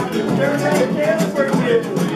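Several acoustic Spanish guitars strumming a Gypsy rumba, with hand clapping keeping an even beat and a voice singing over them.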